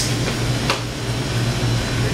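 Steady low hum and hiss inside a shop, typical of refrigerated drink coolers and air conditioning, with a couple of faint clicks.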